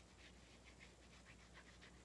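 Near silence with a faint, quick rasping, several strokes a second, of a small foam paint roller being rolled to load paint onto a stamp.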